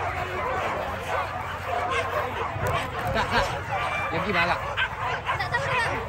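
Hunting dogs yelping and barking in short, repeated calls over the chatter of a crowd, the calls coming thicker in the second half.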